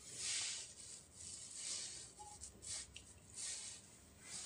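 Soft rustling of hands handling a smartphone, skin rubbing on the phone's body and the tabletop as the grip shifts, in about four short swishes.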